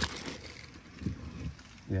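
Stored items being moved around by hand: a sharp knock right at the start, then soft handling bumps and rustles.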